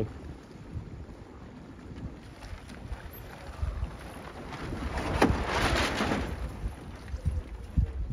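Wind buffeting the microphone in irregular gusts, with a rushing hiss that swells for a second or two past the middle as a 49er racing skiff sails close by.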